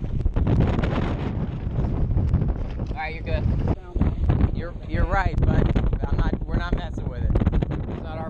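Strong wind buffeting the microphone in a continuous low rumble.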